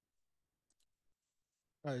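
Near silence with a few faint clicks about three-quarters of a second in, then a man's voice briefly at the very end.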